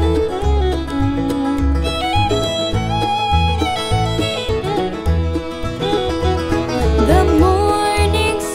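Bluegrass string band playing an instrumental passage without singing: melodic string lines, some notes sliding in pitch, over a steady pulsing bass.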